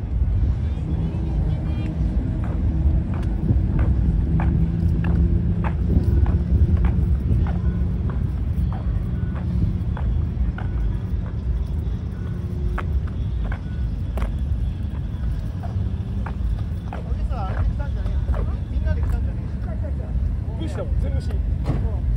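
Low, steady rumble of car engines idling, with a droning engine tone through the first half that then fades. There are footsteps and people talking in the background.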